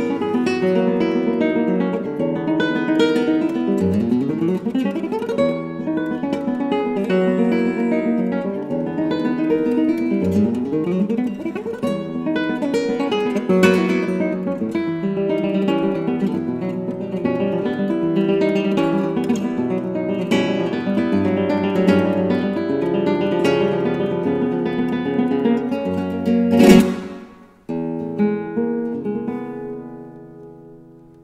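Solo flamenco guitar played fingerstyle, a steady stream of plucked notes and chords. Near the end a single loud struck chord cuts through, after which softer notes ring and fade.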